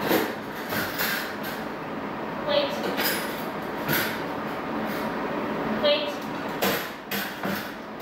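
Wire doors of plastic dog crates rattling and clanking as they are unlatched and handled, with sharp metallic clicks scattered through. Short, high-pitched dog whines come about every three seconds.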